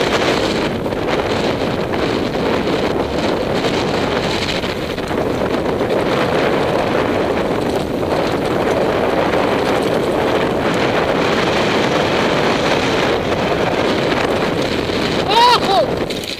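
Wind rushing over the camera microphone, mixed with the rolling and rattling of a mountain bike descending a rough dirt singletrack, as a steady noise. A brief shout cuts in near the end.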